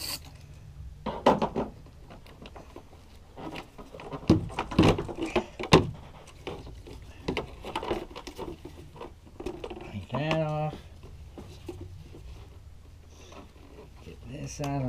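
Hands working a plastic air intake tube and its hose clamps loose on an engine: a run of sharp clicks and knocks of plastic and metal, loudest a few seconds in, over a steady low hum.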